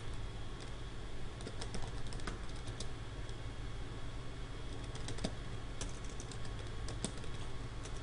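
Typing on a computer keyboard: scattered clusters of keystroke clicks, over a steady low background hum.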